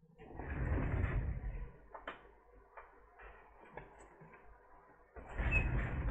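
Handling noise at a repair bench: two spells of scraping and rustling, each about a second and a half long, one just after the start and one near the end, with a few sharp clicks in between.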